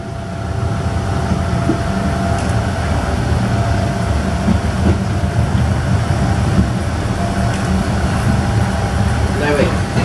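Steady low rumble of a passenger train coach rolling slowly through a station, heard from inside the air-conditioned Vistadome coach, with a thin steady hum over it.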